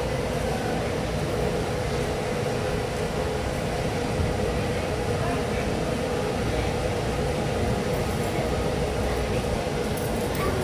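Busy airport terminal background: a steady mechanical hum with distant voices murmuring underneath.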